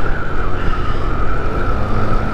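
A Boom PYT Revolution 50cc scooter running at a steady cruise: a low engine rumble with a high, slightly wavering whine over it.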